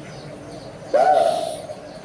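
A monk's voice through a microphone: after a short pause, one drawn-out syllable about a second in, rising at its start and then held.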